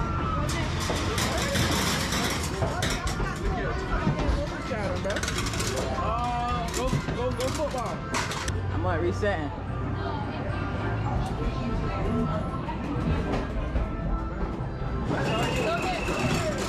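Busy arcade din: electronic music and jingles from the game machines over a babble of voices and a steady low hum, with scattered sharp clacks and clinks.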